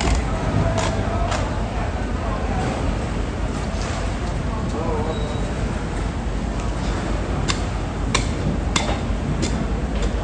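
Steady low noise of a busy fish-market floor with indistinct background voices. A few sharp knife clicks come during the carving of bluefin tuna in the last few seconds.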